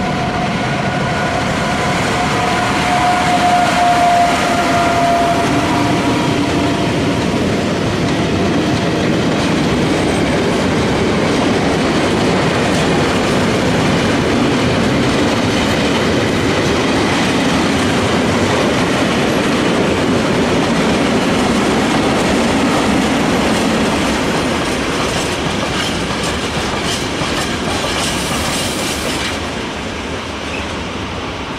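Mixed freight train of tank wagons and covered wagons rolling past close by: a continuous loud rumble of wheels on rail with clickety-clack over the rail joints. A steady whine sounds in the first several seconds and fades out. The level eases off near the end as the last wagons go by.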